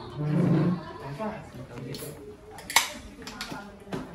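Chatter around a dining table, with a brief loud, low voice about half a second in. A sharp clink of tableware (a can, cup or glass jar set down) comes near the end, with a lighter one just after.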